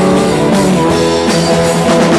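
Live rock band playing an instrumental passage with electric guitars, bass and drum kit, with no singing.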